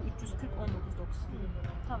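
Quiet conversational speech from two women, with a steady low rumble underneath.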